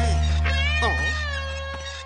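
Cartoon soundtrack: a low held music chord fading out, with a high, wavering cry over it about half a second in that rises and falls in pitch, like a cat's meow.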